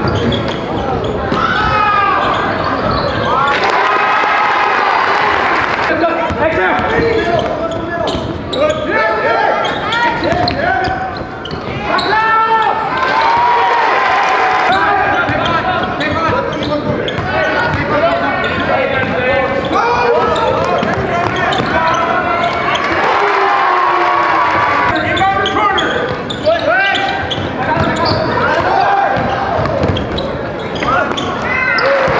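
A basketball bouncing on a gym floor amid many overlapping voices, echoing in a large gymnasium.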